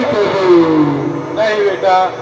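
A man's amplified voice drawing out one long cry that falls steadily in pitch, then breaking into sung or chanted phrases near the end.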